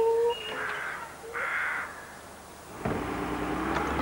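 Crow-like caws in a quiet garden. About three seconds in, a low engine rumble starts up and grows: the mobile crane that is about to lift the garden shed.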